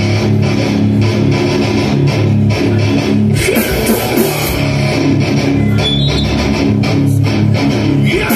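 A live heavy rock band starts its song with electric guitars and a bass guitar playing a riff. Drums and cymbals come in about three and a half seconds in.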